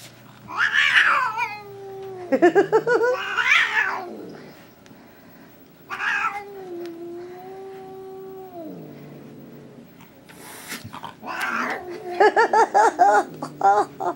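Domestic cat yowling: a series of long, drawn-out calls, some wavering and falling in pitch, one held steady for about two seconds in the middle, and a quick pulsing run near the end. It is the defensive yowl of an upset cat reacting to slippers it dislikes.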